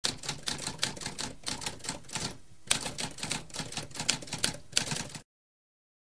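Typewriter keys clacking in a quick, uneven run of keystrokes. There is a brief pause about two and a half seconds in, then the typing resumes and stops about a second before the end.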